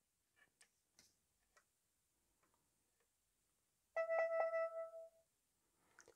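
Security camera's built-in speaker playing a short electronic chime about four seconds in, lasting about a second: the pairing notification that it has read the Wi-Fi QR code shown on the phone.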